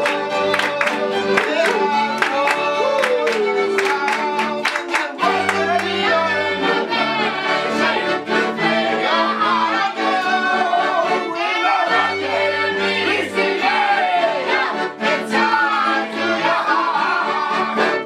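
Live folk band of accordion, fiddle and cello with voices singing over it. For the first five seconds or so the audience claps along in an even rhythm. The song stops at the very end.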